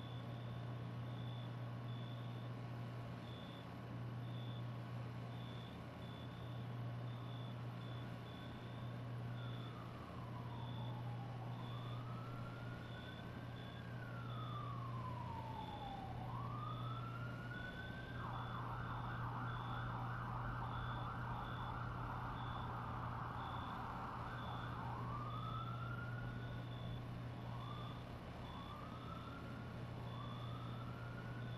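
A siren winding slowly up and down in a wail from about eight seconds in, switching to a fast yelp for several seconds past the middle, then back to short rising wails near the end. Under it runs steady rain, a low steady hum and a high beep repeating a bit more than once a second.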